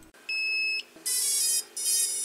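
Three short electronic beeps from a logo-animation sound effect, each about half a second long; the second and third are buzzier than the first.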